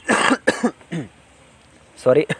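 A person coughing: one harsh burst at the start, then two or three short falling vocal after-sounds, over by about a second in.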